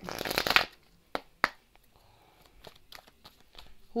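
A deck of cards being shuffled: a quick burst of flicking cards lasting about half a second, then two sharp card snaps a moment later, with faint handling after.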